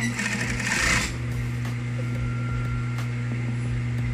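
Sewing machine stitching a hem through curtain fabric: a short run of rapid stitching in the first second, then the motor humming steadily with a few light clicks.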